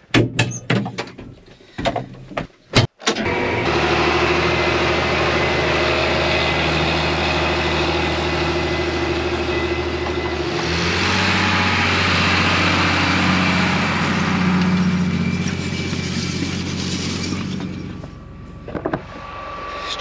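A few sharp knocks, then the steady drone of a John Deere 8220 tractor's diesel engine running as it pulls a grain drill through the field. The pitch of the drone changes abruptly about ten seconds in.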